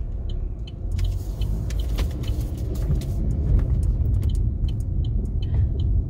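Car cabin noise while driving slowly: a steady low engine and road rumble that grows a little louder partway through, with many light ticks and rattles over it.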